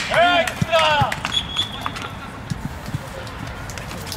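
Players' shouted calls on an outdoor football pitch in the first second, then a short high whistle and a few soft thuds over quieter open-air background.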